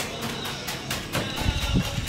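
Steel shovels scraping and chopping through a pile of wet cement mix on a concrete slab, in repeated strokes with a heavier thud near the end, while music plays in the background.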